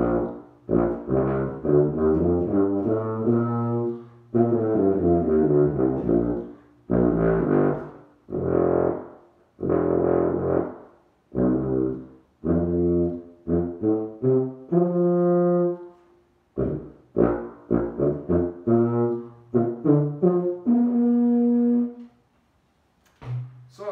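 King 1141 B-flat four-valve marching tuba being played: a series of short phrases of notes with brief breaks for breath between them, ending on a long held note.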